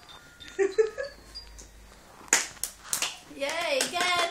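Young children's voices: short high vocal sounds early on, three quick sharp smacks about halfway through, then a toddler's high, wavering voice near the end.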